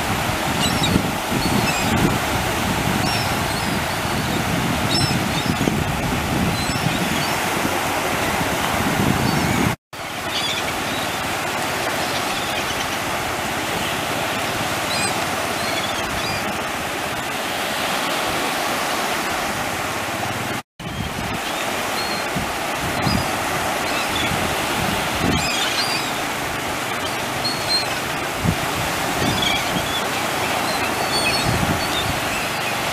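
Ocean surf breaking and washing steadily, with short high calls of gulls scattered throughout. The sound cuts out briefly twice, about ten and twenty-one seconds in.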